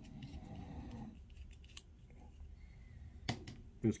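Small metallic clicks and scrapes of a caliper slide and jaws being worked on a brass rifle case, with one sharper click about three seconds in.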